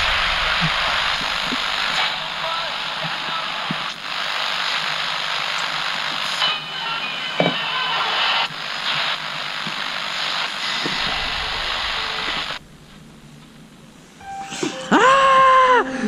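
Steady radio static hiss from a small portable radio that picks up no station, cutting off suddenly about two-thirds of the way through. Near the end a person starts screaming in short cries.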